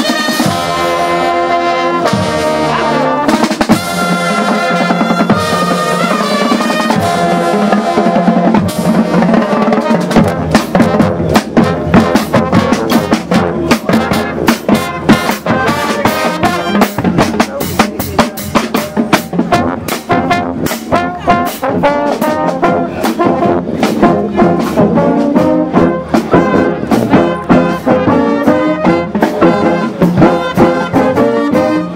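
A marching band playing live: trumpets and sousaphones over snare and bass drums. Held brass chords open it, and about ten seconds in the steady drum beat comes to the fore under the brass.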